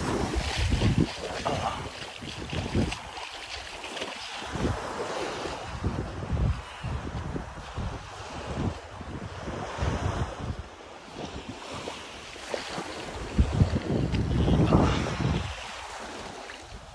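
Wind buffeting the phone's microphone in uneven gusts, over a steady rush of wind and surf.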